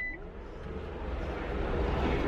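Steady low background noise of a busy exhibition hall, with faint distant voices. A high electronic beep ends just at the start.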